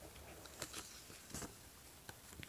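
Faint handling of a paper dollar bill as it is picked up, with a few short crackles of the note about half a second and a second and a half in.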